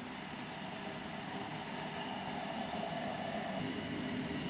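Stainless steel electric kettle heating water at the point of boiling, a steady hiss and rumble. Short high chirps recur about every second or two behind it.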